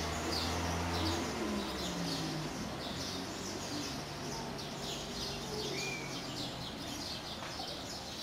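Many small birds chirping continuously, a dense chorus of short repeated chirps. A low hum sits underneath and fades about a second in.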